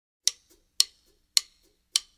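Rhythmic ticking: four sharp ticks about half a second apart, each followed by a fainter tick.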